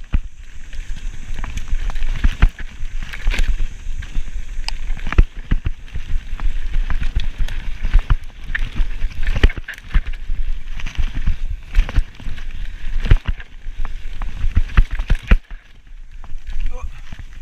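Mountain bike ridden fast down a dirt forest trail: a continuous low rumble from the tyres and ground, with frequent irregular knocks and rattles from the bike as it hits bumps.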